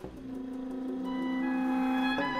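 Reed quintet (oboe, clarinet, alto saxophone, bass clarinet, bassoon) playing a held chord whose notes enter one above another from the bottom up. The chord swells steadily louder.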